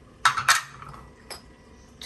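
Kitchen utensils clinking: a quick cluster of a few sharp clinks about a quarter second in, then one more single clink about a second later.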